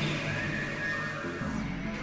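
Experimental electronic music: layered synthesizer drones and steady low tones with gliding pitch sweeps over them. The high end briefly drops out near the end.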